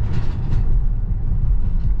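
Steady low rumble heard inside the cabin of a BMW 535d on the move: its twin-turbo diesel straight-six running along with road noise, with no change in revs.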